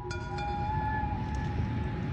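Steady low outdoor background rumble from a field recording, with a few faint held tones of ambient music lingering over it.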